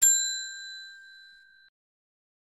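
A single bright bell ding, the sound effect of the notification bell being clicked: one strike that rings out and fades over about a second and a half, then cuts off.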